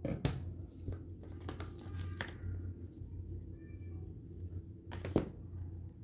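Hands handling a small craft-paper flower: faint paper rustling and a few small clicks and taps, one a little louder about five seconds in, over a steady low hum.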